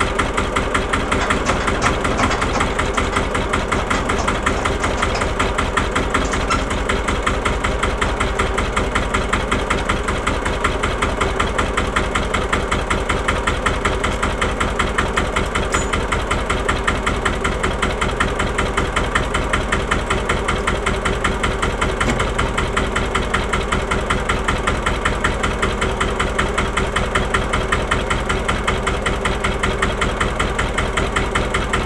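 The single-cylinder diesel engine of a 1954 Allgaier A111 tractor idling with a steady, even beat.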